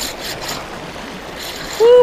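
Small sea waves washing and splashing over shoreline rocks, a steady wash that swells briefly a couple of times. Near the end a short, loud "hu" call from a man cuts in.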